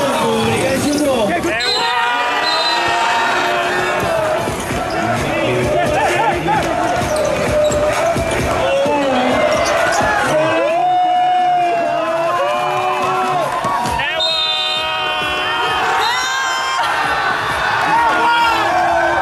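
A basketball being dribbled on a hard court, bouncing repeatedly, under music and voices.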